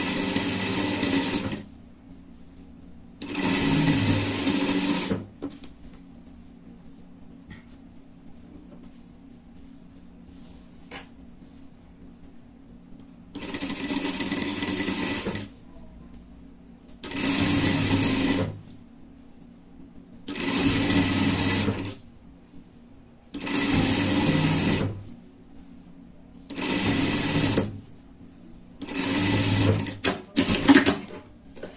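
Industrial single-needle sewing machine stitching in eight short bursts of about two seconds each, with a longer pause between the second and third, as ribbing cuffs are sewn onto fleece. A faint steady hum carries on between the bursts.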